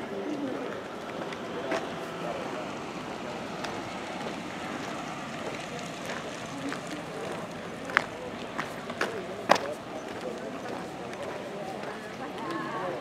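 Faint, indistinct voices of people talking some way off over a steady outdoor background, with several sharp clicks in the second half, the loudest sounds heard.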